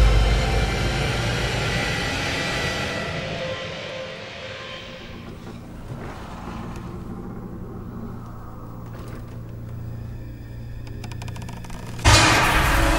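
Horror film soundtrack: a heavy low thud at the start, then a dense wash of score that fades over about four seconds into a quiet, steady low drone.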